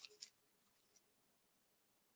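Near silence: room tone, with a couple of faint, brief clicks in the first second.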